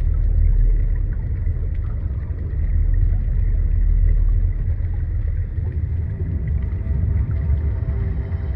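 Deep, steady low rumbling drone with a muffled, underwater character, part of the film's sound design. Faint sustained musical tones begin to come in near the end.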